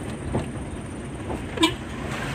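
Steady road and engine rumble inside a moving car's cabin, with a short sharp beep about one and a half seconds in.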